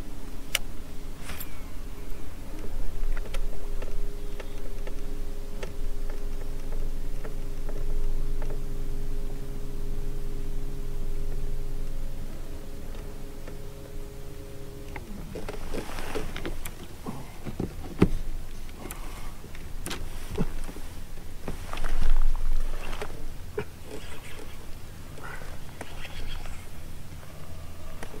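Electric bow-mount trolling motor running with a steady hum for about fifteen seconds, then cutting off. After that come scattered clicks and knocks of fishing tackle and gear on the boat deck.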